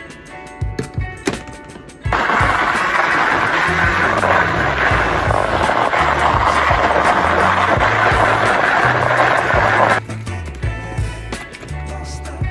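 Personal blender motor running for about eight seconds, from about two seconds in until it cuts off suddenly near ten seconds, blending chopped vegetables, fruit and water into a smoothie. Background music with a steady bass line plays throughout.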